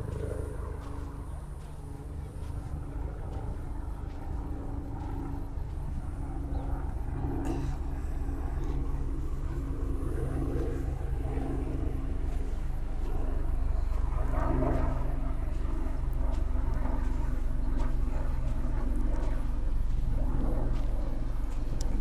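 A steady low drone with a constant hum like a distant engine running, over a low outdoor rumble, growing a little louder in the second half.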